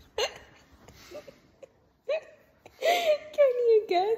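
A woman's stifled, high-pitched laughter: a short squeak just after the start, then a longer laugh about three seconds in that falls in pitch.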